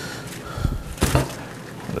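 Wire deep-fryer basket clattering against a plate as freshly fried chicken wings are tipped out onto paper towel, with one sharp knock about a second in.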